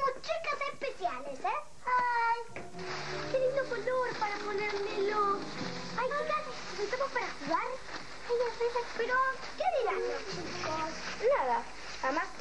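Children talking, with background music coming in about two and a half seconds in and running under their voices.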